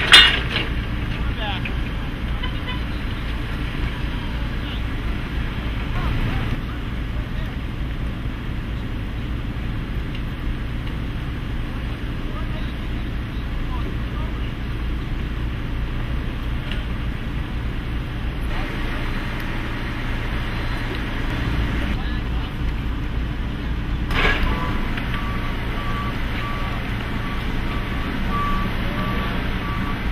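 Propane-powered Yale forklifts running with a steady low engine rumble, with a sharp knock just after the start. In the last five or so seconds a backup alarm beeps in an even, repeating pattern.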